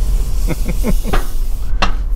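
A man laughing in a few short breathy bursts. Under it runs the steady low rumble and hiss of a car crawling along at walking pace with a window open.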